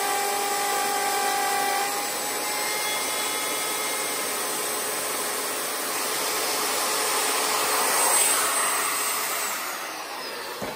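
Craftsman router with a keyhole bit running as it cuts a keyhole slot in hardwood; its tone shifts about two seconds in and it grows louder later on. Near the end the motor is switched off and winds down with a falling whine.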